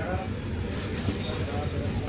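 Cloth rustling as a length of printed fabric is unfolded and spread out, over a steady low rumble.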